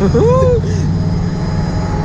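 A man's voice gives one brief drawn-out exclamation in the first second. Under it runs a steady low rumble of wind buffeting the microphone on a moving thrill-ride capsule.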